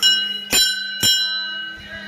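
A temple bell struck three times, about half a second apart, each strike ringing on and slowly fading.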